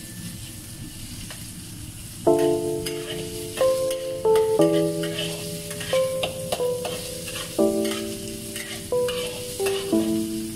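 Minced pork and dried mushroom sizzling in a wok, stirred and scraped with a metal spatula. Background music with held notes and chords comes in about two seconds in and is the loudest sound from then on.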